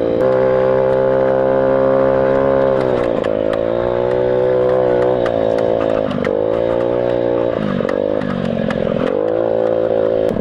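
Motorcycle engine heard from the rider's seat while riding off-road. It holds a steady speed for about three seconds, then the throttle is rolled off and opened again several times, so the engine note falls and climbs back. Short clicks and knocks are scattered throughout.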